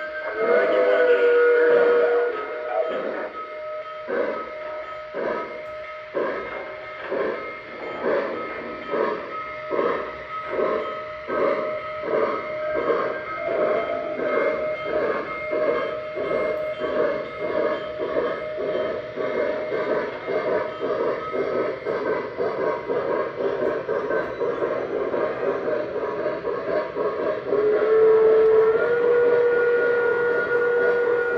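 Onboard electronic steam sound from Lionel O-gauge Pennsylvania Railroad steam locomotives pulling a freight train, played through the tender speaker. The steam whistle blows for about two seconds at the start and then gives way to a steady beat of chuffs, about two a second. The whistle blows again near the end.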